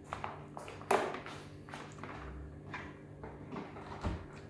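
Handling noises as a power cord is pulled across a benchtop: a few light knocks and rubs, with one sharper click about a second in, over a steady low hum.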